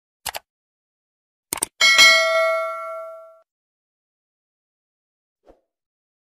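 Subscribe-button overlay sound effect: a single click, then a quick double click, then a notification bell that dings once and rings out for about a second and a half.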